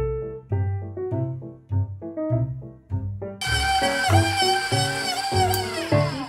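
Background music with a plucked bass line. About halfway through, a stand mixer's motor comes in with a loud high whine as its paddle beats powdered sugar into a thick, tacky gelatin paste. The whine dips in pitch twice under load and falls as the motor slows at the end, a sound like a crying infant.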